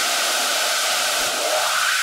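Steady white-noise hiss with a faint held tone underneath, a synthesized noise swell of the kind used in electronic dance music before a drop.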